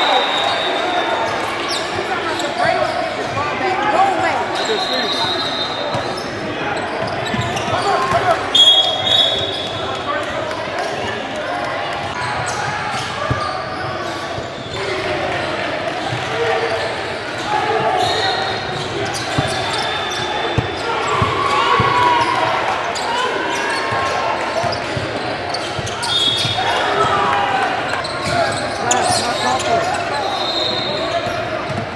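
Live basketball game sound in an echoing gym: indistinct voices of players and spectators, a basketball bouncing on the hardwood floor, and brief high sneaker squeaks on the court.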